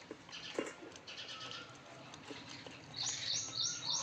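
A dog eating bread from a stainless-steel bowl: scattered clicks and crunches of teeth on food and bowl, the sharpest about half a second in. Birds chirp in the background, with a quick run of about four loud high chirps near the end.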